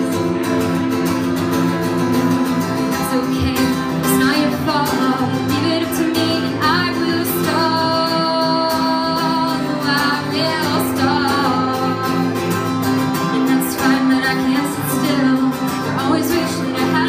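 A woman singing a song while playing an acoustic guitar, in a live solo performance.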